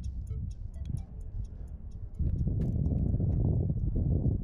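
Wind buffeting the microphone as a low rumble that eases off, then comes back strongly about two seconds in, with a scatter of light clicks throughout.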